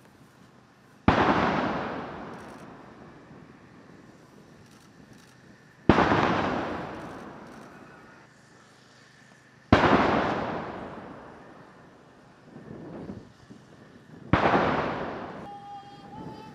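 Ceremonial artillery gun salute: four loud reports about four to five seconds apart, each starting sharply and dying away over two or three seconds, with a fainter thump between the third and fourth.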